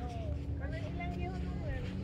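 Wind buffeting the microphone as a steady low rumble, with a faint distant voice over it.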